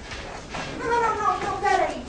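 A person's voice making drawn-out, wordless calls about a second in, each sliding down in pitch.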